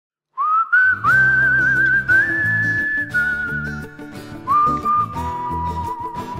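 A whistled melody over a strummed acoustic guitar. The whistling comes in first with a wavering vibrato and the guitar strumming joins about a second in. Near the end the whistle settles on a lower held note.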